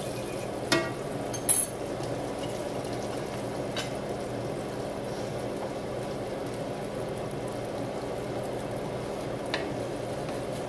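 Onions frying in lard in a cast iron skillet, a steady sizzle. There are two sharp clicks or knocks about a second in, and fainter ones later.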